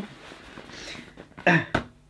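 A quiet room with faint soft rustling, then one short throaty vocal sound from a man about one and a half seconds in.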